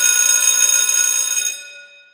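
Bright, shimmering chime from a logo-sting sound effect: several high steady tones ring together, then fade away about a second and a half in.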